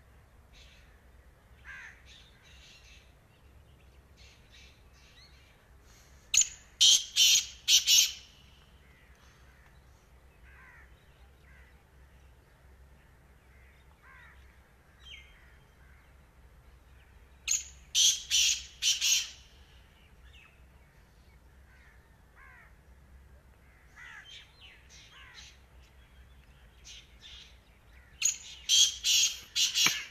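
Black francolin calling: three loud calls about ten seconds apart, each a quick series of four or five notes lasting about two seconds. Fainter bird chirps and short down-slurred notes come in between.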